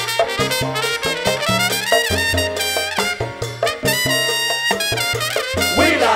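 Trumpet solo over a live salsa band, with bass and percussion underneath: quick runs of notes, a climb upward about two seconds in, and high held notes around four seconds in.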